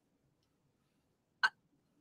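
Near silence, broken once about one and a half seconds in by a single very brief vocal sound, a short hiccup-like catch.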